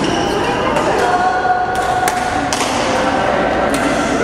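Badminton rally in a hard-walled gym: sharp racket strikes on the shuttlecock, several in four seconds, with voices in the hall underneath.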